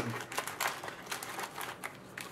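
Foil trading-card packs crinkling and rustling as they are pulled out of a cardboard hobby box, in a run of small irregular crackles.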